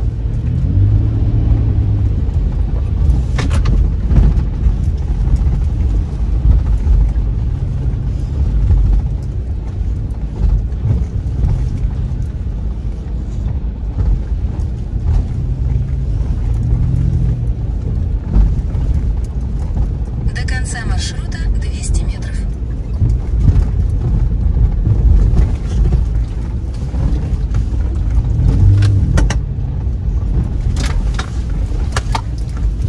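Inside a moving car: a steady low rumble of the engine and tyres on a wet, rutted unpaved road, with the odd knock from the bumps.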